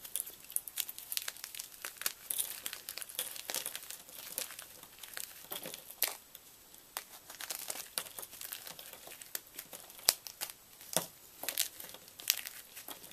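A block of gym chalk broken and crumbled between the fingers: dense, irregular dry crackling and crunching, with a few sharper snaps.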